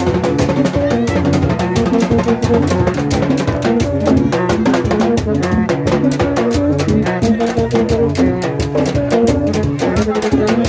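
Rara band playing on the march: metal kònè horns sounding short notes in a repeating riff over drums and fast, dense percussion.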